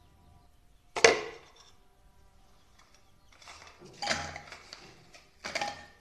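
Dry biscuits dropped into the glass bowl of an electric food chopper, knocking and clinking against the glass: one sharp clink about a second in, then a few more clusters of clinks in the second half.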